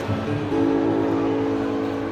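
Live acoustic guitar and vocal music: a chord of several notes held steady from about half a second in.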